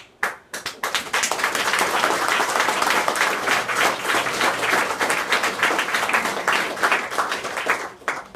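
Audience applauding: a few scattered claps that build within about a second into steady, full applause, which dies away near the end.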